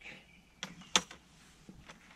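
Microfiber mop head on an extension pole being scrubbed against the side wall of a fifth-wheel trailer: faint rubbing, with two short sharp knocks about half a second and a second in.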